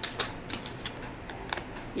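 A few light clicks and taps as a tarot card is picked up from the table and handled, fingernails against the card, with a sharper click about a second and a half in.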